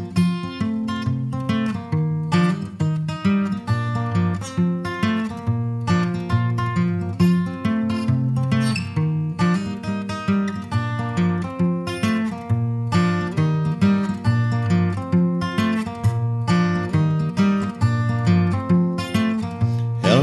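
Instrumental intro of an Americana song on acoustic guitar: a steady strummed rhythm with a bass line stepping beneath it.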